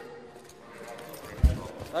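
Faint voices over room noise, with one dull, low thump about one and a half seconds in.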